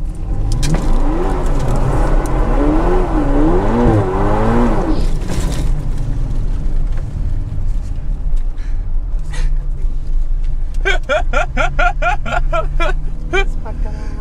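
Ferrari Portofino's twin-turbo V8, heard from inside the cabin, accelerating hard with its pitch rising and dropping through gear changes for the first few seconds, then settling into a quieter steady drone.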